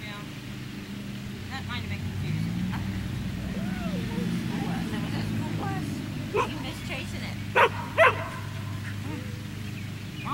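A dog barks three short times, about six, seven and a half and eight seconds in, the last two close together. This is frustrated demand barking from a dog left out of the treats.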